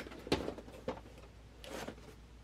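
Cardboard shipping box being handled: a knock from the box about a third of a second in, a lighter tap a little later, then a short scraping rustle near the end as a boxed vinyl figure is slid out of it.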